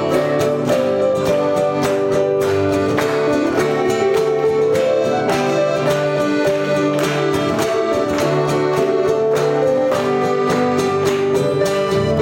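A live instrumental trio of piano accordion, electric keyboard and acoustic guitar playing a tune together, with held accordion chords over the guitar's steady rhythm.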